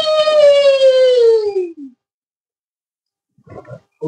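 A long, high-pitched vocal howl in a witch character's voice, held and then sliding down in pitch until it breaks off about two seconds in. After a silent gap, a short faint vocal sound comes near the end.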